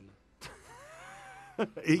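A short whirr like a small electric motor, about a second long, with a whine that rises and then falls. It starts and stops abruptly.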